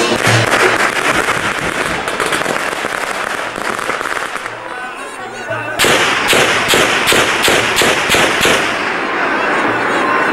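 Yemeni zaffa drumming: the tasa, a metal kettle drum beaten with sticks, rattling out fast sharp strokes, with low beats of the tabl drum beneath. The playing thins out briefly around the middle, then comes back in suddenly and loudly with a steady beat of about four strokes a second.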